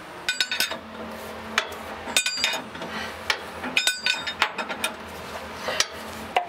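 Steel wrenches clinking against one another and against metal, with a bright ringing tone, in three short bursts of rapid clinks spaced well apart and a few single clicks.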